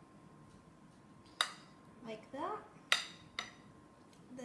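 A metal spoon clinking against a ceramic dish while swirling berry compote over ice cream: three sharp clinks, the first about a second and a half in and the last two close together near the end.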